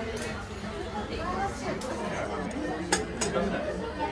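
Café ambience: low chatter of other diners with tableware clinking, and one sharp clink of a dish or glass about three seconds in.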